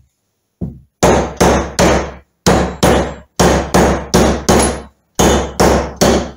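Mallet blows driving a mainshaft bearing into a heated gearbox inner casing: one light tap, then about a dozen sharp knocks in quick groups of two to four, two or three a second, each with a brief metallic ring.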